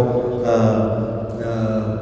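A man's voice through a microphone, held at one low, nearly level pitch for most of the two seconds: a drawn-out hesitation sound rather than words.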